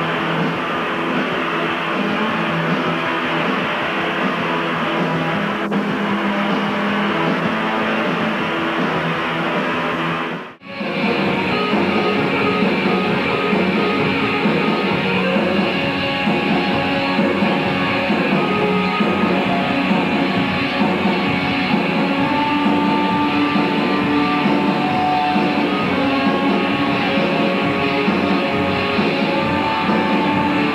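Live rock band playing, a dense, steady wall of distorted electric guitars. The sound drops out for a moment about ten seconds in, at an edit, and the live music picks straight up again.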